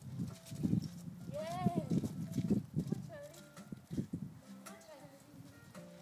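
A woman's high-pitched excited praise call to her dogs about a second and a half in, rising then falling like a drawn-out "yay". It is followed by a couple of short squeaky vocal sounds, with low thumps throughout.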